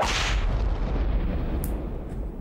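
A sudden boom with a deep, long rumbling tail that slowly fades.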